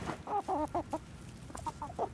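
Silkie chickens clucking: a quick run of short clucks in the first second, then a couple of fainter ones near the end.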